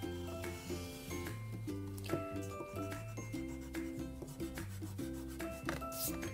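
Pencil scratching across drawing paper in slow strokes as lines are drawn in, over soft background music with a repeating melody.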